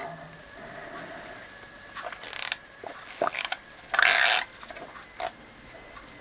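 A plastic water bottle being handled and opened, with scattered clicks and creaks and a short rushing hiss about four seconds in.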